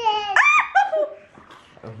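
A young child laughing: a loud, high-pitched burst of laughter in the first second that trails off quieter.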